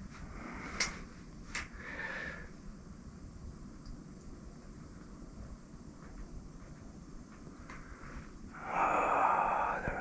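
A man breathing, with faint breathy sounds and two sharp clicks in the first two seconds, then a long, loud breath near the end.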